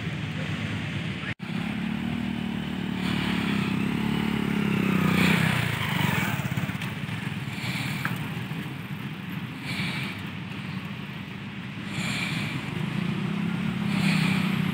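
Small commuter motorcycle engine running at low speed as it labours through deep mud. The engine note wavers, drops away about five seconds in, and picks up again near the end.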